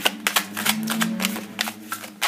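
A deck of large tarot cards being shuffled by hand: a quick, irregular run of card clicks and flicks as the cards are pushed into one another, busiest in the first second.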